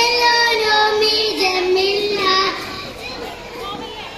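A small group of young children singing a rhyme together in unison, with held notes; the singing breaks off about two and a half seconds in, leaving a quieter gap.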